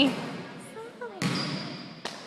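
A basketball bouncing on a hardwood gym floor, one sharp bounce a little over a second in that rings on in the large hall, with another at the very end.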